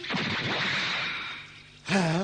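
Cartoon sound effect of an attacking snake: a harsh hiss that fades out after about a second and a half. A boy's short shout comes at the very end.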